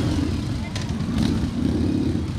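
Several V-twin cruiser motorcycles riding past at walking pace, their exhaust loud with an uneven, pulsing low note.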